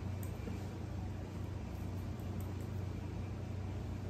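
A steady low hum in the room, with a few faint ticks of a metal lid ring being screwed down tight on a glass canning jar.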